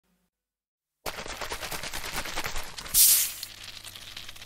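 Fizzy-drink sound effect: a second of silence, then a fast crackle of bubbles, then a sudden loud hiss about three seconds in that quickly fades.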